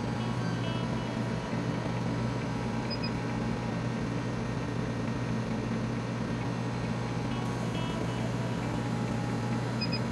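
Flatbed laser cutting machine running while it cuts: a steady, even machine hum, with two short high beeps about three seconds in and again at the very end.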